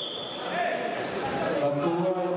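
Background voices of people talking in a large sports hall, with a high steady tone fading out during the first second.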